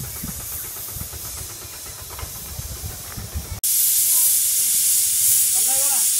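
Quiet outdoor ambience that gives way abruptly, about three and a half seconds in, to a loud steady hiss from a food stall's cooking stove burner under its pots. A brief voice comes near the end.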